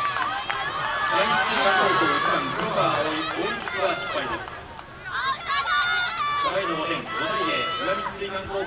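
Several high-pitched young women's voices shouting and calling out over one another, with a brief lull about five seconds in.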